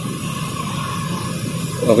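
Steady hissing background noise with a faint high hum through it. A man's voice says "oke" at the very end.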